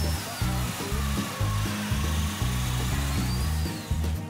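A Festool Domino plunge joiner running as it cuts a joining slot into the edge of a hardwood board: a steady cutting hiss with a motor whine that drops in pitch early on and rises again near the end. Background music with a steady beat plays under it.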